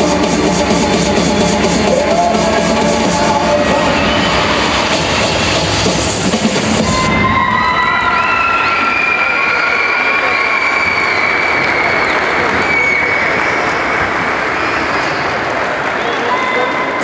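Loud accompaniment music for a rhythmic gymnastics routine, which stops abruptly about seven seconds in as the routine ends. A crowd then cheers and applauds, with long high-pitched shouts.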